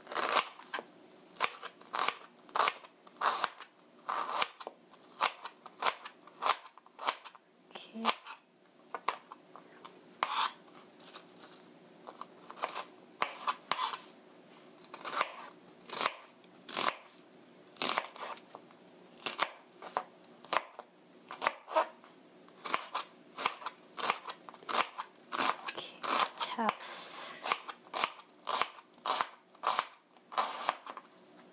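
Chef's knife chopping a halved, scored onion into dice on a plastic cutting board: a steady run of sharp knocks about two a second, with a short lull partway through.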